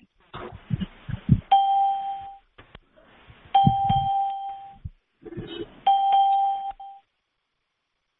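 A bell-like chime with a single clear pitch, rung three times about two seconds apart, each ring fading over about a second. Muffled knocking and rustling noise comes just before each ring.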